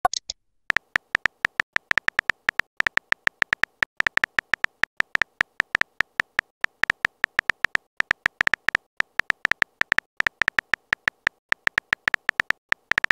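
Simulated phone-keyboard tap clicks from a texting-story app: a rapid, irregular run of short clicking taps, several a second, as a message is typed out.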